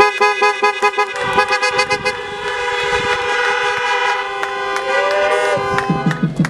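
Many car horns honking at once, a dense chord of steady held tones at several pitches that starts abruptly: a congregation in parked cars honking in place of applause.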